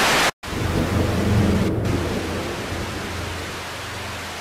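Static hiss, like a detuned TV, used as a logo sound effect. A burst cuts off suddenly just after the start; after a brief gap the hiss returns with a low rumble that swells about a second in and slowly fades.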